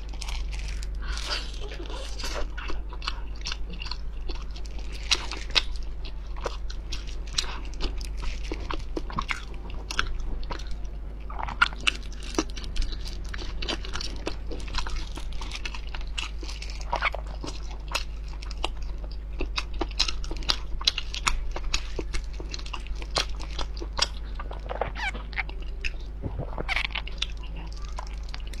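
Close-miked chewing and biting of grilled lamb-casing meat sausage: irregular wet mouth clicks and smacks that go on throughout.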